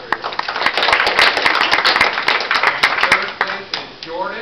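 A small group clapping in applause, starting suddenly, fullest about a second in and thinning out toward the end.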